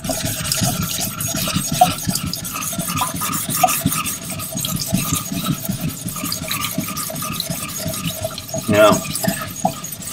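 A diamond lapping plate is rubbed back and forth over a wet Nakayama Kiita natural whetstone, making a continuous gritty rasp of short strokes. The stone is being lapped flat under running water.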